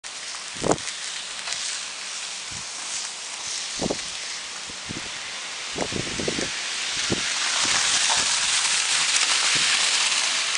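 A steady hiss of car tyres on slush, swelling in the second half as the car comes past on the snow-covered road. A few dull low thumps stand out earlier.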